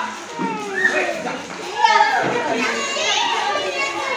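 Children shouting and calling out at play, several voices overlapping, with rising and falling cries.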